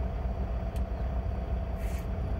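Steady low rumble of a semi truck's diesel engine running, heard from inside the cab, with a steady hum over it.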